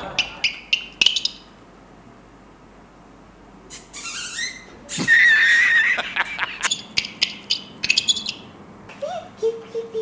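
Mouth-made imitation of a lark's song: runs of quick high clicks and chirps, a rising glide, then a warbling whistle about five seconds in, with a short low hum near the end.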